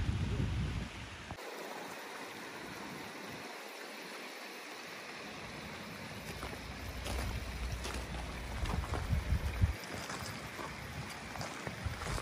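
Outdoor wind-and-water noise beside a pond: a steady hiss, with low wind rumble on the microphone in the first second and again from about six to ten seconds, and a few light knocks.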